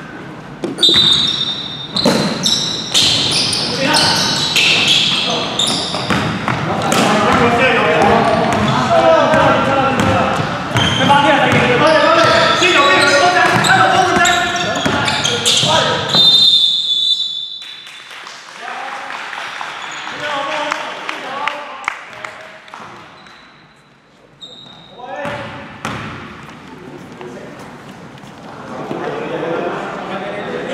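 Indoor basketball game in a hall: a ball bouncing and players' voices calling out across the court, with sharp knocks from play. A referee's whistle blows about a second in and again around sixteen seconds, when a player goes down under the basket, after which the play is quieter.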